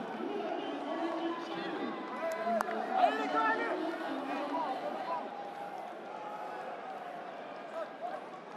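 Indistinct overlapping voices of a rugby stadium crowd and players, with no clear words. There is a single sharp knock about two and a half seconds in.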